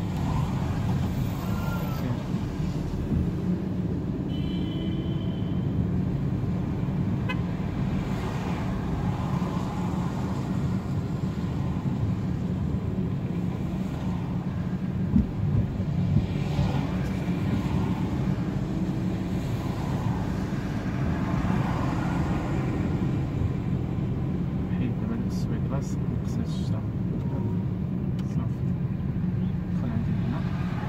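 Steady engine and road noise heard from inside a small petrol car driving in city traffic, with a brief car-horn toot about four seconds in.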